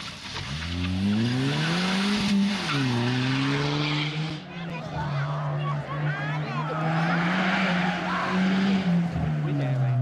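Suzuki Swift rally car's engine accelerating hard out of a corner: the revs climb, dip sharply about two and a half seconds in at a gear change, climb again, then hold high and steady. Tyres squeal briefly partway through.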